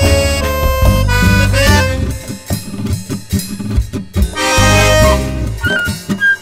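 Instrumental passage of a murga rioplatense song: accordion melody and chords over bass drum and cymbal strokes. About two seconds in, the melody thins out and separate drum strokes carry on. At about four and a half seconds the full band comes back in with a loud crash and chord, then drum strokes and a melody line follow.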